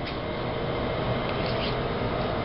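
Ring-pull lid of a Spam can being peeled open: a scraping metal tear with a few small clicks, over a steady room hum.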